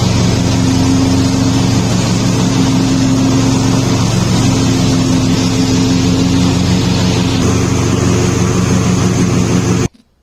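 Riding lawn mower engine running steadily at working speed while it mows, with the steady whir of the cutting deck over it. The sound cuts off suddenly near the end.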